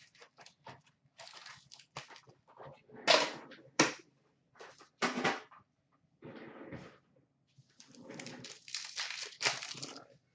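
15-16 Upper Deck Series 2 hockey card packs being taken out of their tin, set down and torn open: irregular crinkling of the pack wrappers, with several sharp, louder rips around the middle.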